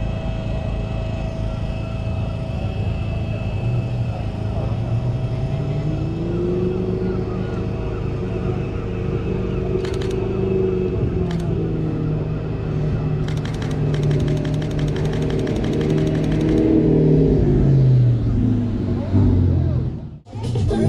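A sports car engine, an Audi R8's, revving as the car drives up, its note rising and falling and loudest near the end. Over it a mirrorless camera's shutter clicks twice, then fires a rapid burst lasting about three seconds.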